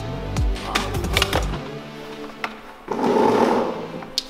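Background music, with sharp knocks and clatter of a Nissan Leaf's plastic dashboard being worked free. A loud scraping rustle about three seconds in is the loudest sound.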